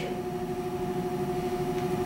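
Steady room hum: two held, even tones over a low background, with no other event.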